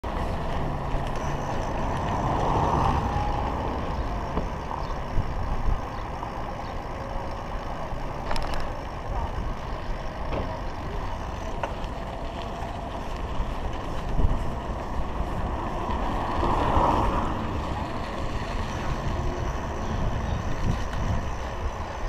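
Steady wind and road noise from riding a bicycle, with wind buffeting the action camera's microphone, and traffic swelling past twice, about two seconds in and again about two-thirds of the way through. A couple of sharp clicks from the bike are heard along the way.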